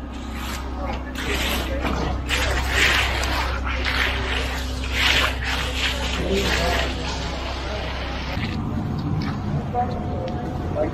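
Hand trowels and floats scraping and smoothing wet concrete in repeated strokes. A steady low engine hum runs underneath and drops away about eight seconds in.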